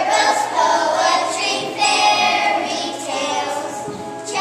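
A group of young children singing together in unison, in sung phrases with a short break near the middle.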